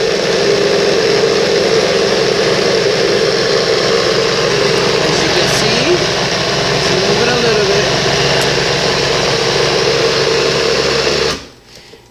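NutriBullet blender motor running steadily with an even hum as it blends frozen bananas and cream, then cutting off sharply near the end. The steady sound is the one taken to mean the banana ice cream is ready.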